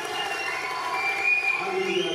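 A large crowd cheering, with a few high whistles sounding through the noise.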